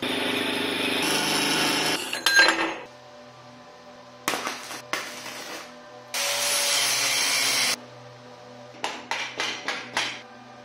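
A metal-cutting band saw cutting through steel square tube for about two seconds, ending in a short metallic clatter. Then MIG welding crackles in two bursts, the longer one about a second and a half near the middle, and a rubber mallet gives several quick taps on the steel frame near the end.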